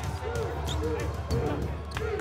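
A basketball dribbled on a hardwood court, several bounces about half a second apart, over arena voices and music.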